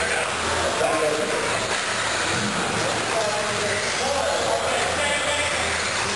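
Electric 1/10-scale off-road buggies racing, their 17.5-turn brushless motors whining and rising and falling in pitch as they accelerate and brake, over a steady hall noise.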